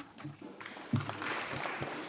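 Applause from members of the Scottish Parliament at the close of a speech, building from about half a second in.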